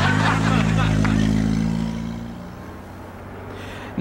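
Stock sound effect of a car engine running just after starting: a steady low hum that fades away about two and a half seconds in.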